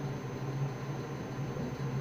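Steady low hum with an even background hiss, and no other distinct sound.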